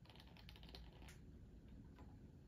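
Faint, quick patter of small ticks as reed-diffuser liquid trickles through a small plastic funnel into a ceramic bottle, with one sharper click just after a second in.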